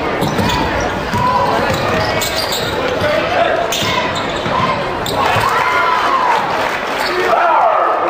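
A basketball being dribbled on a hardwood gym floor during a game, with crowd chatter and shouts echoing through the hall. A few drawn-out shouts or calls come in the second half.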